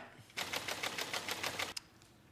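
Spinning topic wheel ticking rapidly and evenly, about ten clicks a second, then stopping suddenly as it settles on a topic.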